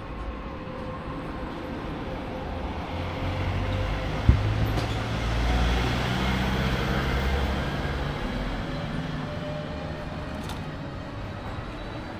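A motor vehicle passing close by in street traffic: its low engine sound swells to a peak about halfway through and then fades. There is a sharp knock a little past four seconds in.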